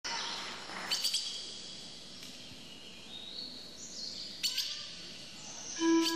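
Birds chirping, with bursts of sharp high chirps at about one second and again at about four and a half seconds. Right at the end a held flute-like music note comes in.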